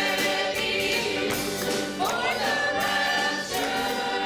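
Mixed church choir singing a gospel song together over a steady beat.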